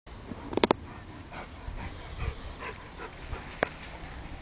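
Plott hound giving faint, short whimpers, with two sharp clicks near the start and another near the end.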